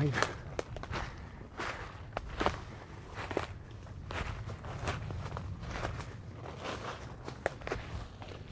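Footsteps walking over woodland ground, an irregular series of crackling steps.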